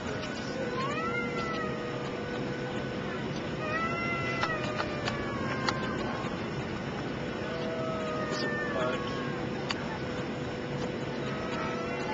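Steady airliner cabin noise, the rush of the engines and airflow with a steady whine in it. Over it come three short rising-and-falling cries, about a second each, near the start, in the middle and about two-thirds through.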